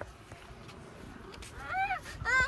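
A young child's high-pitched voice: after a quiet stretch, one drawn-out call near the end that rises and falls in pitch.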